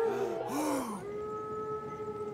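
A cartoon character's wordless vocal sounds: a quick run of short rising-and-falling groans or gasps. About a second in, a single steady held note takes over.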